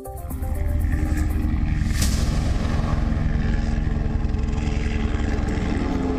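Propeller-driven transport aircraft flying over in formation: a deep, steady engine rumble with droning tones, mixed with music. There is a brief whoosh about two seconds in.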